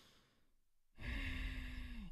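A man breathing audibly into a close microphone as a mock mindful-breathing exercise: a breath trails off, a short pause follows, then about a second in comes a long sighing breath with a faint hum in it.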